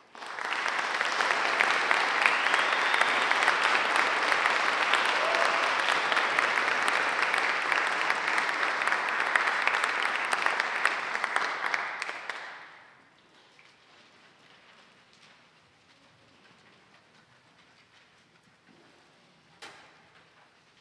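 Audience applauding, starting suddenly right after the music ends and dying away about twelve seconds in. A quiet hall follows, with one short knock near the end.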